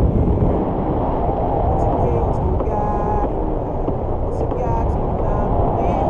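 Steady, loud wind rushing over the microphone of a pole-held camera in flight under a tandem paraglider; the airflow of the glide makes a dense low rumble.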